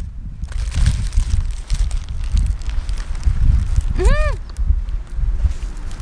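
Wind buffeting the microphone with an uneven low rumble, while a paper burger wrapper rustles and crinkles in the hands. About four seconds in, a short closed-mouth 'mm' of someone savouring a bite, its pitch rising then falling.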